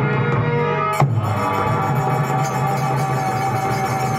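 Harmonium holding sustained notes over a steady low drone, accompanying a devotional bhajan, with a sharp dholak stroke about a second in.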